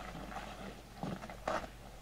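An e-mountain bike climbing away over roots and dirt on a forest trail, heard faintly, with two short knocks from the bike about a second in and about half a second later.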